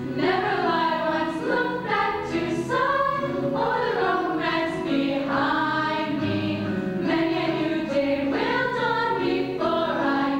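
Chorus of girls' voices singing a lively show tune together, with held low accompaniment notes underneath.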